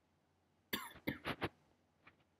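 A man coughing: one cough then three short quick ones in a row, starting a little under a second in.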